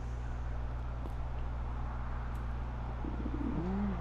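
Steady low electrical hum with hiss on the recording. About three seconds in comes a brief low sound that rises and then falls, like a coo.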